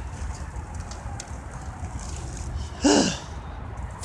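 Steady low outdoor rumble on a phone microphone, with a short voice sound falling in pitch about three seconds in.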